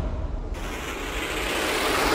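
Raw hardstyle track in a breakdown, its kick and bass dropped out while a rising noise sweep builds, thickening and growing louder from about half a second in.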